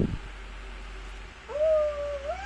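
A young child's voice making one long, high-pitched "ooh" that starts about one and a half seconds in, after a near-quiet stretch.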